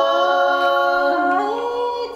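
Unaccompanied voice singing a long, drawn-out melismatic note in the Thai (Tai) khắp folk style, its pitch stepping up about a second and a half in.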